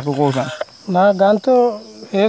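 A man talking in short phrases, with a steady high insect drone underneath throughout.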